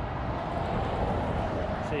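A vehicle passing on the road: a rush of tyre and engine noise that swells to a peak about a second in, then eases.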